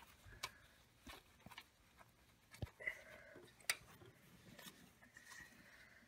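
Near silence with a few faint clicks and rustles as gloved hands twist copper wire onto a cotter pin.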